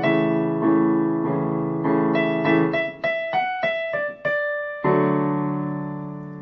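Casio CDP-120 digital piano playing a chorus: right-hand melody notes over sustained left-hand chords. A thinner run of single notes follows, then a final chord is struck near the five-second mark and held, fading away.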